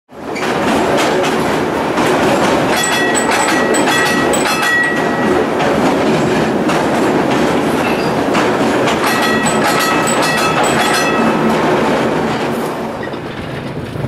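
Rail car rolling along track, with wheels clacking over the rail joints. A high, steady squeal comes in twice, from about three to five seconds and again from nine to eleven seconds. The sound fades near the end.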